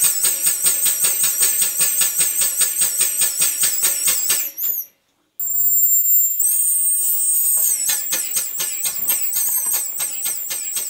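Full-size marine steam engine running on the bench, its exhaust beating rhythmically at about five beats a second. It breaks off briefly about five seconds in, then picks up the same beat again.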